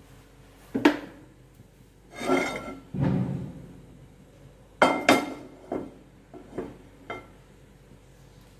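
Nonstick frying pan knocking and scraping against the gas stove's metal burner grate as it is lifted and set back down. There is a sharp knock about a second in, a scraping rub around two to three seconds, two sharp knocks around five seconds in, then a few lighter taps.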